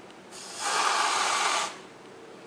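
Aerosol can of whipped cream spraying: one hissing spurt of about a second and a half as the cream is dispensed from the nozzle.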